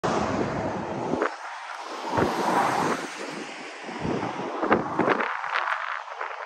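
Wind buffeting a microphone in uneven gusts, with rumbling low thumps that come and go, heaviest in the first second and again between about four and five seconds in.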